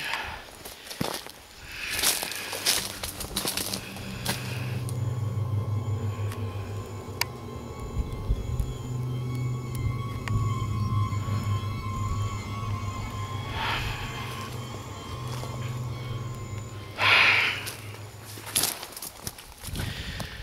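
Background music: a sustained low drone that holds steady through most of the stretch, broken by brief noisy bursts about two seconds in and again near the end.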